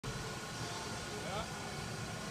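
Faint voices over a steady low hum, with one short rising voice about halfway through.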